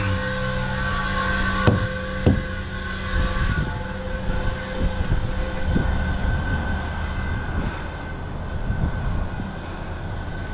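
Heavy truck's diesel engine idling steadily while the air system recharges the low air tanks. A higher hiss fades out about four seconds in, and two sharp knocks come about two seconds in.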